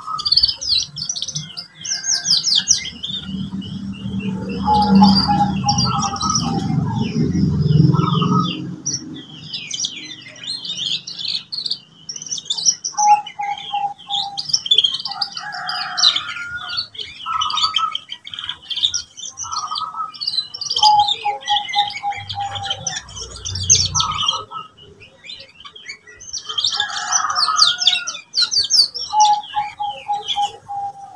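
Young domestic canary singing a long, varied practice song: fast high trills and chirps broken up by runs of lower repeated rolling notes, with a few short pauses. A young bird still learning to string its song phrases together. A low background rumble sounds for a few seconds early on.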